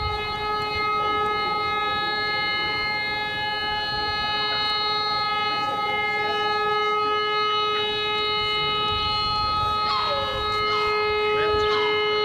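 Civil defence siren sounding one long, steady, unwavering tone: the all-clear signal for the end of danger after the harbour mine was neutralised.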